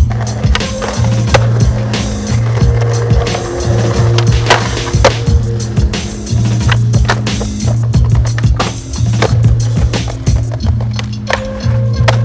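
Skateboard wheels rolling over wooden decking and concrete, with many sharp snaps and knocks from ollie pops and landings, mixed with a music track that carries a steady bass line.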